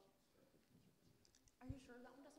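Near silence: room tone with faint distant voices and light clicks, and a soft low thump near the end.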